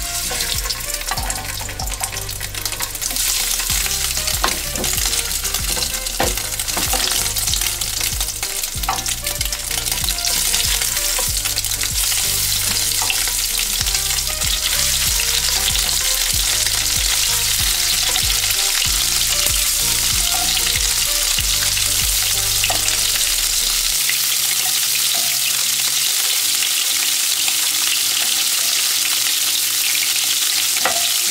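Diver scallops searing in smoking-hot olive oil in a nonstick frying pan. The sizzle builds over the first few seconds as more scallops go in, then settles into a steady, loud fry, with a few light clicks along the way.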